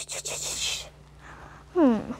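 A rustling hiss for about the first second, then near the end a short, loud vocal sound that falls in pitch.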